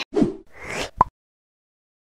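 Editing transition sound effect: a quick whoosh that falls and then rises, ending about a second in with a short, sharp pop.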